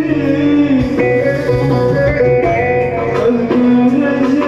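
Live Turkish folk dance tune (oyun havası) played on a plucked bağlama together with an electronic keyboard, running steadily with a shifting melody line.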